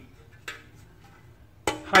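A lull in speech: faint room tone with a brief soft noise about half a second in, then a sharp click just before a man's voice starts near the end.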